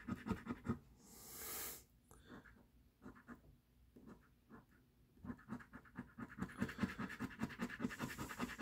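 A coin scraping the coating off a scratch-off lottery ticket in quick, short back-and-forth strokes. There is a short hiss about a second in, then only a few light scrapes until the quick scratching resumes about five seconds in.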